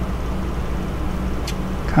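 Steady low background hum with a faint click about one and a half seconds in.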